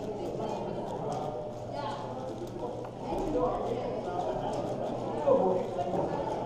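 Quick, irregular clicking and clacking of a 7x7 speed cube's plastic layers being turned by hand, with one louder clack about five seconds in, over a steady murmur of background chatter.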